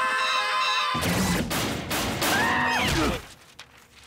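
A short burst of cartoon music, then from about a second in a rapid run of crashing and banging impact sound effects with arching pitched sounds over them, dropping away sharply about three seconds in.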